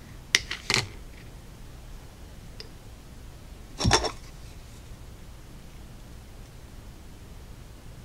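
Small clicks of a paintbrush against a plastic paint palette, two quick ones near the start, then a louder knock about four seconds in as the brush is set down to rest in a palette well. A steady low hum runs underneath.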